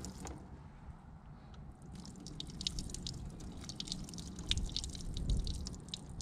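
Water dripping and splashing in small drops as it is poured from a small plastic cup into a cupped hand. The drips come as a quick irregular run from about two seconds in.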